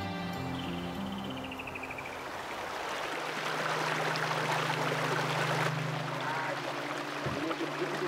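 Background music that fades over the first few seconds into the steady rush of a shallow stream running over rocks, with a steady low tone beneath the water.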